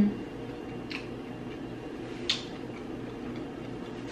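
Two short clicks while a mouthful of food is chewed with the mouth closed, a faint one about a second in and a sharper one just past two seconds, over a steady low hum.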